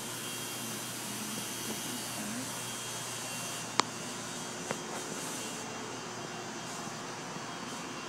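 Steady background hum of a machine shop, with one sharp click a little under four seconds in and a fainter click about a second later.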